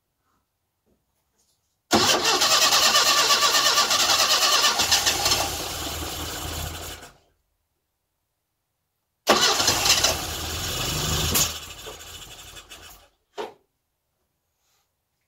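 Classic Mini's A-series four-cylinder engine being started in two attempts, the first lasting about five seconds and the second about four, each fading out at the end, followed by a short click. This is the first start attempt of the rebuilt engine, just after the distributor drive was found 180 degrees out and retimed to number one cylinder, with only a little fuel in the carburettor.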